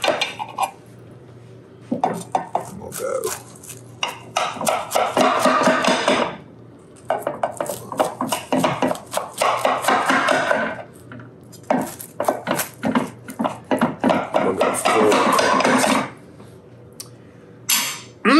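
A kitchen knife sawing through a baked crescent-dough crust and clicking and scraping against the bottom of a glass baking dish. It comes in three bursts of a few seconds each, with short pauses between the cuts.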